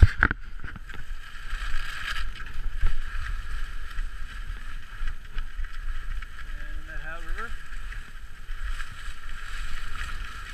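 Skate skis scraping and gliding over groomed snow in uneven strokes, with wind rumbling on the microphone.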